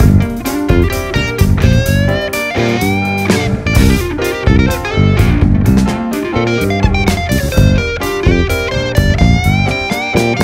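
A small band playing an instrumental R&B piece: a melodic electric guitar line with notes that slide up and down in pitch, over bass guitar and drums.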